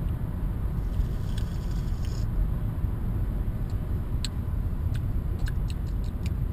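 Steady low road and engine rumble inside a moving car's cabin, with a few faint clicks in the second half.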